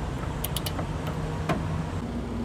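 Ratchet of a torque wrench clicking on a hitch bolt: a quick run of three clicks about half a second in and a single click about a second later, over a steady low rumble like an idling vehicle.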